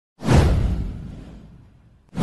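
A whoosh sound effect with a low rumble under it, starting suddenly and fading away over about a second and a half, as a swirl of ink-like smoke sweeps across the animated intro.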